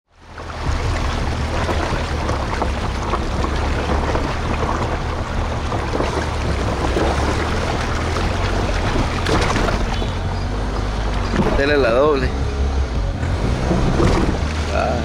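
A car driving slowly through standing floodwater, water sloshing and splashing steadily around the tyres, with a low rumble underneath. A wavering pitched sound stands out briefly near the end.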